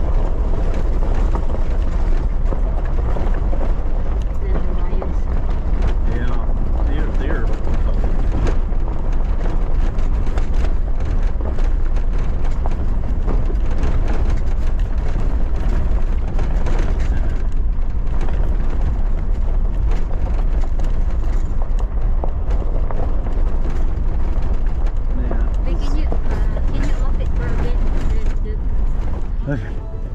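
Off-road vehicle driving on a rough gravel mountain road: a steady, loud drone of engine, tyres on gravel and a heavy low rumble, with no letup.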